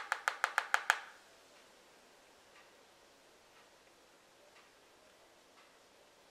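A quick run of about seven sharp, evenly spaced taps in the first second, six or seven a second, from a makeup brush being tapped against a hard eyeshadow palette. After that only faint ticks come, about once a second.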